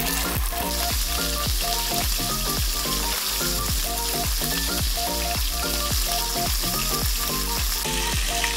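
Beef burger patty frying in hot oil in a wok: a steady sizzle that starts as the patty goes into the pan. Background music with a steady beat plays over it.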